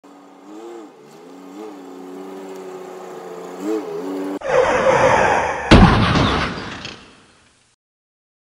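A low steady hum with a few brief rises in pitch. About four seconds in, a sudden loud crash-like burst of noise begins, with its heaviest boom over a second later, then fades away, like a title-reveal sound effect.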